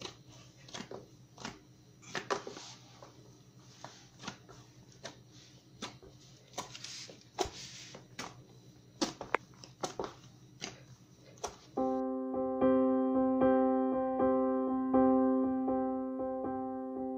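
Hands kneading a stiff dough in a plastic basin: irregular soft slaps, squelches and pats. About twelve seconds in, electric piano music cuts in and takes over.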